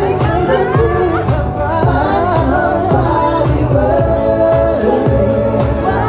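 Live solo vocal sung into a handheld microphone over pop backing music with a steady drum beat. The voice moves through quick runs and holds one note for about a second around four seconds in.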